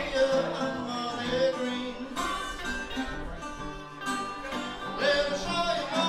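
Live acoustic blues: two guitars, one a metal-bodied resonator guitar, strummed and picked under an amplified harmonica blown into a hand-held microphone, its notes bending and wavering.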